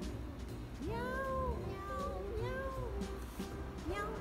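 A domestic cat meowing twice, two long calls that rise and then fall in pitch, over background music.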